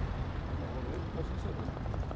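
Steady low rumble of a motor vehicle engine on the street, with faint voices.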